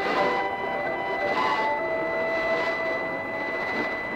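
Distant 1044 kHz mediumwave AM broadcast on a Degen 1103 portable receiver's built-in whip antenna: a steady hiss of static, a constant high whistle, and a few long held tones in a break between spoken passages.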